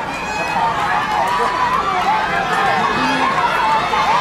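Spectators in the stands shouting and calling out over one another during a running race, many overlapping voices with no clear words.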